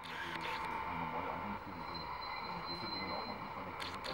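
LGB garden-railway diesel locomotive running on the track with a steady motor whine, under faint background talk.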